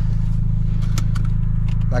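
Volkswagen Golf 7 GTI's turbocharged 2.0-litre four-cylinder idling steadily, a low hum heard inside the cabin, with a seatbelt buckle clicking shut about a second in.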